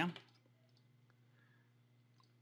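A spoken word ends, then near silence with a faint steady hum and a couple of faint computer-mouse clicks.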